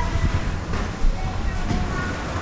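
Conveyor-belt lift of a tubing run rumbling steadily inside a corrugated-metal tunnel, with irregular knocks and a sharper knock about a second in, and faint voices.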